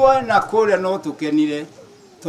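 A man speaking into a handheld microphone in a Kenyan language, with a low hum under the voice that cuts out about half a second in.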